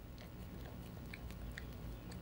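A dog chewing, faint: a few small crunching clicks over a low background hum.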